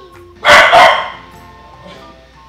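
A dog barks twice in quick succession, loud and sharp, over quiet background music.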